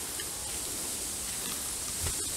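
Faint rustling footsteps on a path of dry bamboo leaves over a steady high-pitched hiss.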